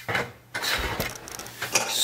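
Plastic LEGO pieces clicking and rattling as they are handled, with a longer scraping rattle from about half a second in.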